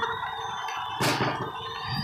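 A stage confetti cannon firing: one sudden burst about a second in that trails off into a hiss.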